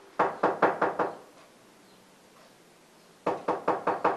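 Knocking on a door: two rounds of about five quick knocks, the second coming about three seconds after the first.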